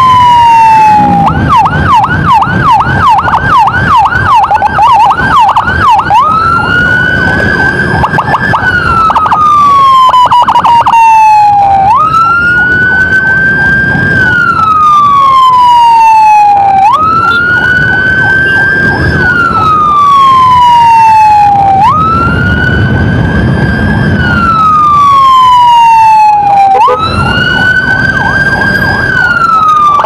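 Electronic emergency siren, loud: a fast yelping warble for the first few seconds, then a slow wail that jumps up in pitch and sinks back down about every five seconds, with engine and road noise underneath.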